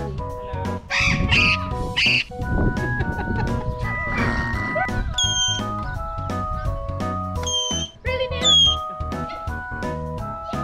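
Pionus parrot screaming over background music: two loud, harsh screams about one and two seconds in, then several shorter whistled calls in the middle and near the end.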